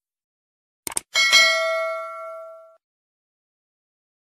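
A short click, then a bell-like ding that rings out and fades over about a second and a half: the notification-bell sound effect of a subscribe-button animation.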